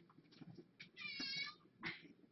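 A cat meowing once, a single high, slightly arched call of about half a second, with a short second sound just before the end.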